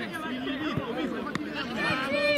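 Several people talking over one another at a football pitch, with a single sharp click a little past the middle.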